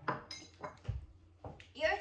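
Tableware being handled on a table: a spoon and small ceramic plates give a few short clinks and knocks, with a dull thump about a second in.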